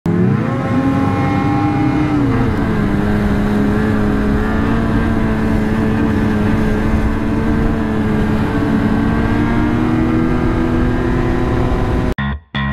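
Snowmobile engine running at speed on the trail. It revs up quickly at the start, drops back a notch after about two seconds, then holds a steady high pitch that creeps up slightly near the end.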